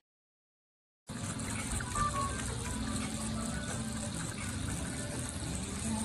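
A lamb sucking milk from a feeding bottle, under a steady rushing noise that starts suddenly about a second in after a moment of silence.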